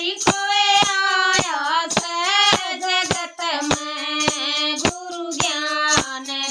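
Two women singing a Hindi devotional bhajan, with sharp clacks from handheld clappers keeping a steady beat about twice a second.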